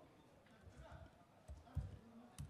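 Keys being typed on a laptop keyboard: about five soft, low knocks, the last one near the end the loudest.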